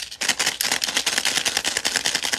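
Plastic Mini Brands capsule balls shaken hard by hand, the little toys sealed inside rattling against the shell in a fast, continuous clatter.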